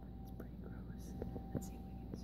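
Faint whispered speech, with a few soft clicks over a thin steady tone and low hum.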